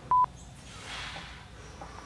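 A single short censor bleep, one steady beep lasting about a fifth of a second, just after the start, laid over a swear word. After it, only a faint hiss.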